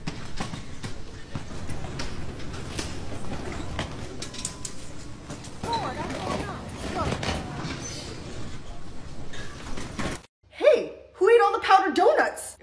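Busy airport baggage-hall ambience: background voices, with scattered knocks and clatter of suitcases on a baggage carousel. It cuts off about ten seconds in, and a woman starts speaking near the end.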